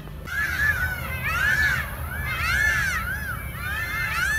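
Many birds calling at once, a dense chorus of overlapping rising-and-falling calls that starts abruptly about a third of a second in.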